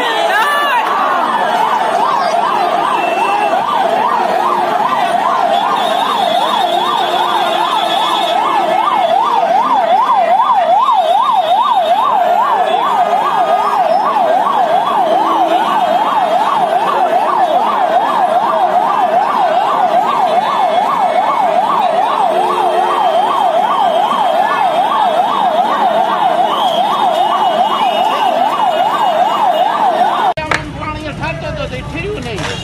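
Emergency vehicle siren on a fast warble, its pitch sweeping rapidly up and down about two to three times a second, loud and unbroken.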